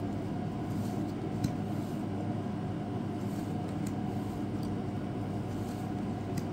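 Steady low hum in a small room, with a few faint soft ticks of trading cards being slid off a stack in the hand.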